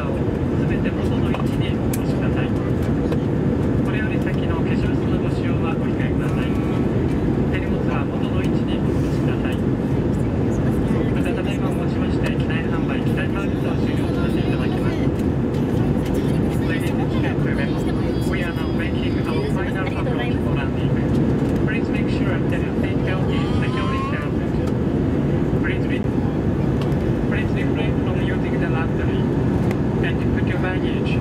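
Steady cabin noise of an Airbus A320-200 airliner on final approach, its engines and rushing air heard from a window seat over the wing, low and even throughout.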